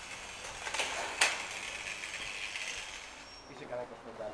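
Footsteps of a group walking, with a steady hiss of movement and one sharp click a little over a second in.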